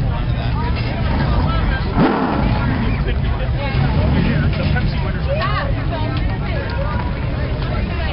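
Late model stock car's V8 engine rumbling at low speed, with a brief rev about two seconds in. People are talking nearby.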